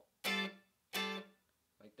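Two short, choppy G9 chord stabs strummed on an electric guitar, about 0.7 s apart. Each is cut off quickly by relaxing the fretting hand so the chord doesn't ring out, keeping it staccato for a funk rhythm.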